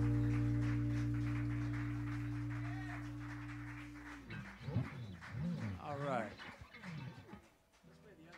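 Electric guitars and bass holding the final chord of a blues song, ringing and slowly fading for about four seconds. Then a few voices whoop and call out for about three seconds, their pitch rising and falling.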